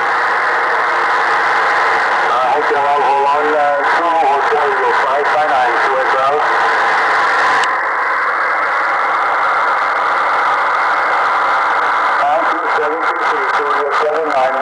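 Shortwave amateur radio transceiver tuned to 14.160 MHz on the 20 m band. It gives out a steady hiss of band noise with a weak single-sideband voice coming through it in patches. A little under eight seconds in, the upper hiss drops off abruptly.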